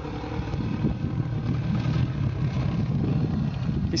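Distant 2008 Honda CRF450R dirt bike, its single-cylinder four-stroke engine running steadily, with wind on the microphone.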